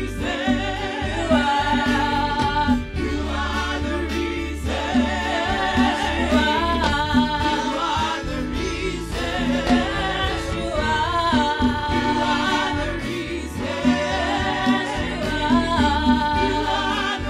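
Gospel worship song sung by several voices over instrumental backing with a steady beat and bass.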